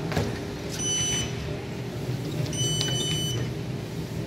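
Two high electronic beeps from a Schindler elevator's car push-buttons as they are pressed, the second longer than the first, after a click at the start. A steady low hum runs underneath.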